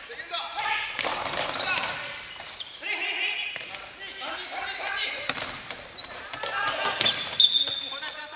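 Futsal players calling out to each other in a gymnasium with echo, over the thuds of a futsal ball being kicked on the court. Two sharp kicks stand out in the second half, followed near the end by a short high squeak, typical of sneakers on the wooden floor.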